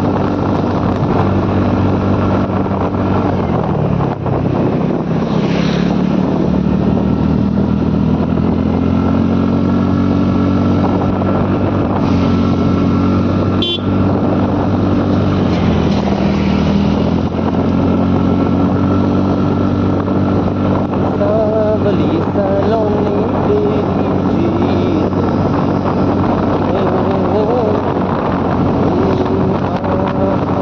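A two-wheeler's engine running while riding, with wind buffeting the microphone. The engine note drops briefly a few seconds in and again about halfway, then picks back up as the rider eases off and accelerates through the bends.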